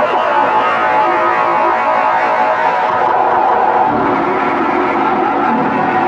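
Harsh noise music: a loud, unbroken wall of distorted electronic noise with shifting, wavering tones inside it, holding a steady level.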